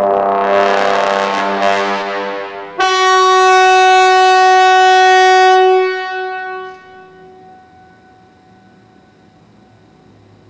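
Solo trombone: a dense, rough held sound, then about three seconds in a sudden loud attack on a single sustained note. The note holds for about three seconds and dies away in the room's reverberation about seven seconds in.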